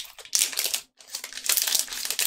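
Foil wrapper of a Magic: The Gathering collector booster pack crinkling as it is pulled open by hand, with a brief pause just before a second in.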